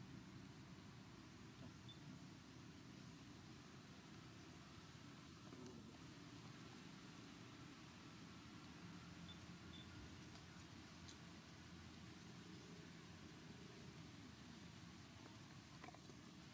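Near silence: a faint, steady low background rumble, with a few faint ticks.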